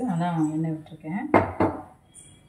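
A voice speaking, then two sharp clanks of kitchenware about a quarter second apart near the end, the first the louder.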